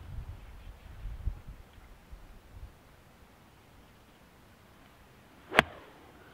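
Nine iron striking a golf ball: a single sharp click about five and a half seconds in, cleanly struck. A low rumble runs through the first few seconds before it.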